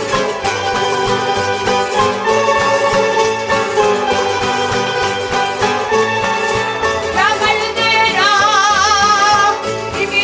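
Canarian folk ensemble of guitars and round-bodied lutes playing a strummed and plucked accompaniment live; about seven seconds in, singers come in with a wavering held melody over the strings.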